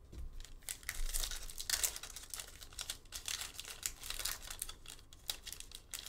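The plastic wrapper of a 2019-20 NBA Hoops Premium Stock trading-card pack crinkling in irregular crackles as it is handled and torn open.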